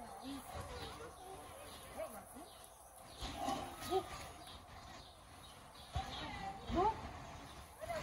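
Beluga whales calling above the water: many short rising and falling chirps and squeals, with a louder upward-sweeping whistle about three-quarters of the way in.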